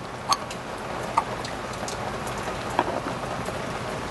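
Three light clicks of metal parts as a scooter carburetor's top cap is seated and a Phillips screwdriver is set to its screw, over a steady background hiss.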